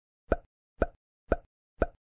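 Animation pop sound effect repeated four times, about half a second apart, each a short identical plop, marking star bullet points popping onto the screen one by one.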